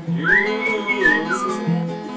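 A person whistling a short phrase that rises, holds a high note, then dips and falls away, over an acoustic guitar being strummed.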